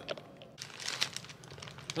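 Crinkling and crackling of packaging or paper being handled, starting about half a second in as a quick run of small crackles.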